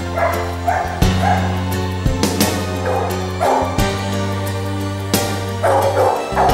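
Background music with held notes and a beat, over which a yellow Labrador puppy yips again and again in short calls.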